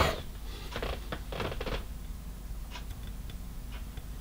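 Plastic model-kit sprues and their clear plastic bag being handled: a quick run of crinkly rustling and light plastic clicks in the first couple of seconds, then a few faint ticks.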